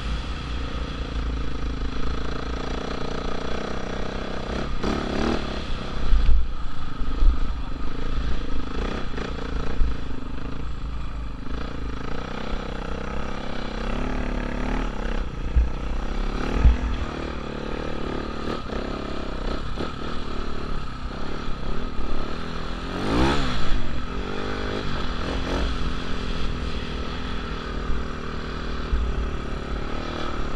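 Dirt bike engine running as the bike rides over beach sand, its pitch rising and falling with the throttle several times. Heavy wind rumble on the camera's microphone runs under it.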